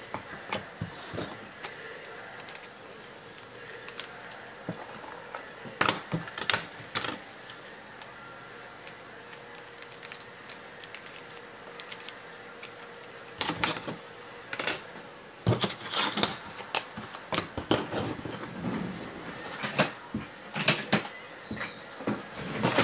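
Scattered clicks and taps from objects being handled on a table, sparse at first and coming thick and fast for the last several seconds.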